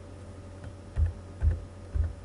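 Three keystrokes on a computer keyboard, about half a second apart, over a steady low hum.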